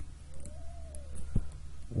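A faint, short tone that rises and then falls in pitch over about a second, over a steady low hum, with a light tap about one and a half seconds in.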